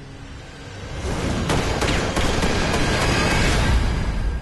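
Trailer soundtrack: music that swells about a second in into a loud, deep rumble, with a run of sharp cracks like gunshots or impact hits over it.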